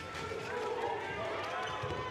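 Players and coaches shouting on a handball court, with the ball bouncing on the hard floor.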